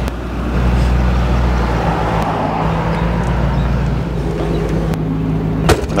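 A 2002 Camaro SS convertible's LS1 V8 running steadily on the move with the top down, under wind and road noise, until the sound cuts off abruptly near the end.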